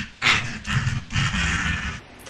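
A man laughing hard in several breathy bursts, without words.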